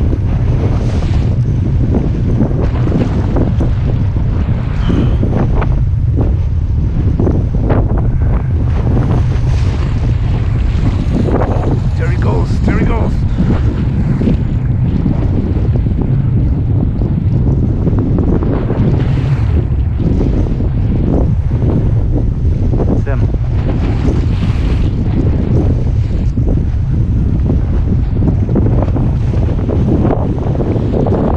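Strong wind buffeting the microphone in a constant low rumble, over surf breaking and splashing irregularly against a rocky shore.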